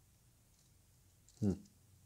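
Faint clicks of hard plastic model-kit parts being handled and pressed together, then a short hummed 'hmm' from a person near the end.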